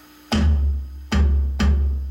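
Stick strikes on an electronic drum kit pad, each triggering a deep drum sound with a long low boom: three hits, the first about a third of a second in, then two close together near the middle, the stick let bounce off the pad.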